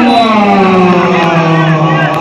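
A man's voice holding one long drawn-out cry, its pitch slowly falling.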